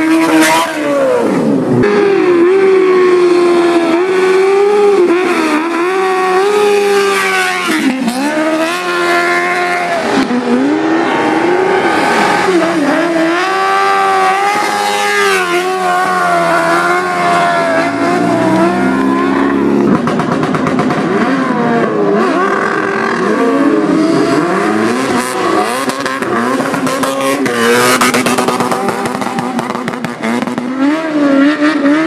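Several vehicle engines revving up and down again and again at high revs, their pitches overlapping and wavering without a break.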